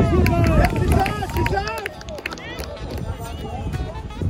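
Several high voices shouting and calling over one another, loudest in the first two seconds and then fading, with a few sharp knocks in between.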